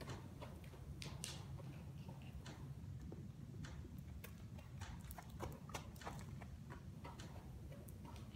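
Young mule's hooves on the soft dirt of an arena floor as it trots around on a lunge line: scattered light ticks, irregular, over a low steady rumble.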